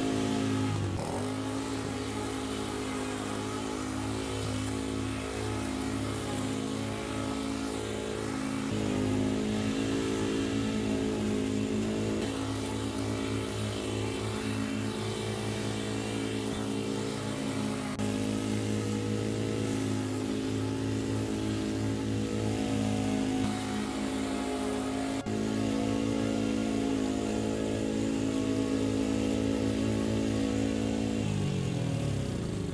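Walk-behind petrol lawn mower engine running steadily under load as it cuts long grass, with a few abrupt jumps in the sound at edits.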